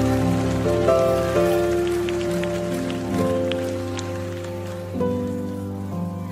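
Soft background worship music with no voice: sustained chords held and changing every second or two.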